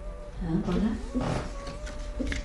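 A woman's short, low, wordless moan, then a sharp breathy burst about a second and a quarter in, over a faint steady drone.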